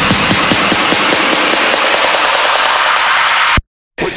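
Trap music build-up in a DJ mix: fast repeated drum hits fade out in the first second or so under a dense wash of white noise, then the sound cuts off abruptly to silence about half a second before the end, the pause just before the drop.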